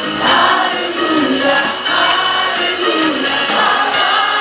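Live amplified worship song: two women and a man singing into microphones over musical accompaniment, the melody gliding in sustained sung lines.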